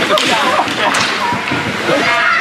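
Ice hockey play heard from rinkside: skates scraping the ice and a sharp crack about a second in, under spectators' voices.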